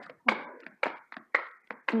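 A deck of tarot or oracle cards being handled and shuffled, with a quick run of sharp card slaps and taps about four a second.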